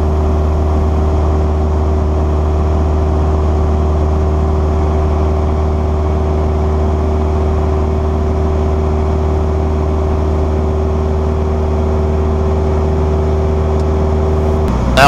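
Cessna 172SP's four-cylinder Lycoming IO-360 engine and propeller running steadily in flight, heard from inside the cabin as a constant, even drone.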